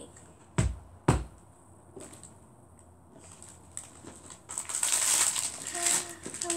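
Two sharp knocks about half a second apart as a plastic L.O.L. Surprise toy ball is cracked open like an egg, followed near the end by a rustling of packaging as the contents are pulled out.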